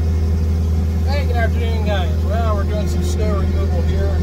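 John Deere 330G compact track loader's diesel engine running steadily, a loud low hum heard from inside the cab. Over it, from about a second in, a small child's high voice babbles briefly.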